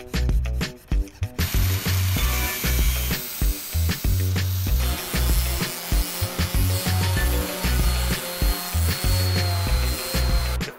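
Small electric sander running over a wooden board, a steady hiss that starts about a second and a half in, sanding dried epoxy resin drips off the surface. Background music with a steady beat plays throughout.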